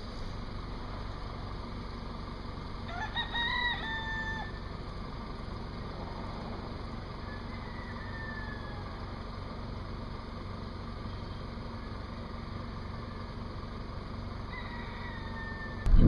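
Peafowl calling softly: a short pitched call with a couple of quick notes a few seconds in, then fainter single calls around the middle and near the end, over a steady low outdoor rumble.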